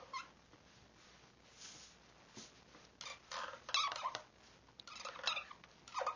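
Dry-erase markers squeaking and scratching across small whiteboards as children write a word, in a few short strokes about halfway through and again near the end.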